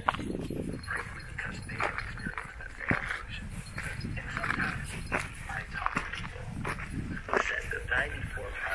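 Standard poodles panting and footsteps scuffing over loose rock on a steep trail, with occasional sharp clicks of feet or paws on stone.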